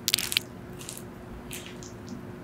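A metal spoon scooping into the soft, wet flesh of a halved papaya, close-miked: a sharp wet scrape at the start, then two softer wet scoops.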